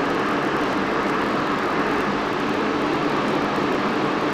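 Steady, even background hiss with a faint low hum underneath, unchanging throughout.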